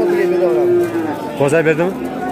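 A farm animal's long, steady call, held on one pitch and ending about a second in, with men talking over it.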